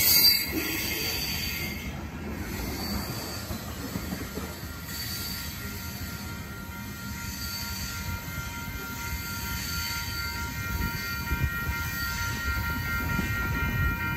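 Freight train cars rolling past for about the first two seconds. After that comes a quieter rumble of a train on the line, with a steady high-pitched wheel squeal that grows stronger toward the end.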